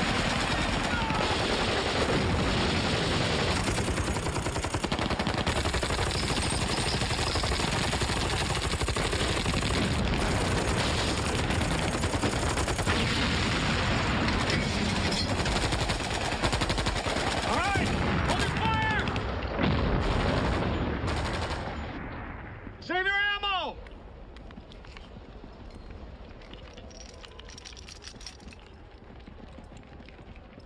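Battle soundtrack: continuous machine-gun and rifle fire mixed with explosions, dense and loud, which dies away after about 22 seconds. Men's shouts cut through the firing, and one long yell rings out as it stops.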